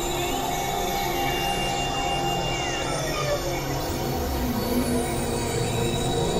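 Experimental electronic drone music: layered synthesizer tones held steady under a dense noisy wash, with thin tones repeatedly gliding up and down in pitch.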